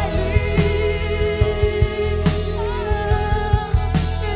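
Worship song with a band: a sung voice holding long notes over bass and regular drum beats.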